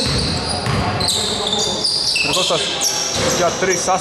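Basketball shoes squeaking on a hardwood court, many short high-pitched squeaks overlapping, with a basketball bouncing on the floor.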